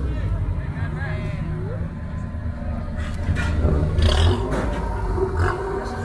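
Low, steady engine rumble from a slammed, rusted vintage pickup truck rolling slowly past, with crowd voices over it.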